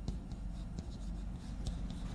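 Chalk writing on a blackboard: a quick run of short scratching and tapping strokes, over a low steady hum.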